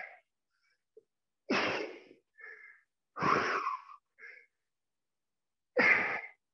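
A man breathing hard while doing push-ups: loud, forceful breaths about every one and a half to two and a half seconds, each followed by a short, fainter breath.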